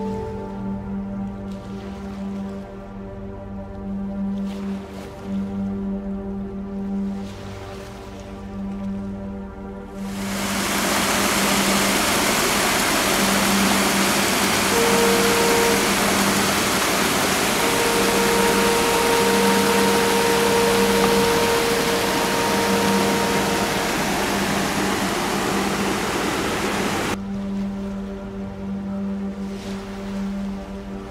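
Slow ambient music with sustained tones. About ten seconds in, loud rushing water from whitewater rapids cuts in suddenly and covers the music, then cuts off again a few seconds before the end.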